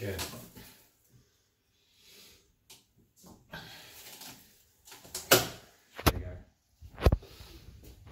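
A door handle and latch being worked by a robotic arm's gripper as the door is pulled open: a run of sharp clicks and knocks, the loudest about five to seven seconds in.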